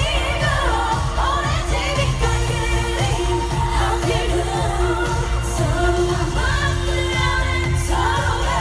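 K-pop girl group singing live over a loud pop backing track with a heavy, booming bass, recorded from among the arena audience.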